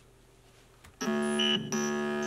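A synthesizer sounds about halfway in: a sustained, bright keyboard-like chord, triggered from an MPC pad. It dips briefly and sounds again. This is the external synth's audio now coming through the MPC software's armed audio track, with its input monitoring set to 'in'.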